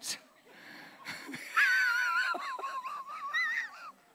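A high-pitched, drawn-out vocal sound that starts about a second and a half in, slides down in pitch and then holds, wavering, for about two seconds before stopping near the end.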